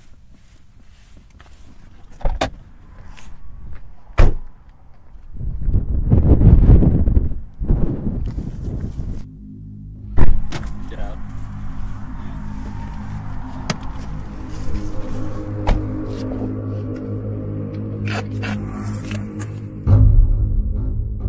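Film soundtrack: car foley with a couple of sharp knocks and a loud two-second rush of noise, then a loud thump about ten seconds in as a car door is opened. After the thump, low sustained music comes in and runs to the end.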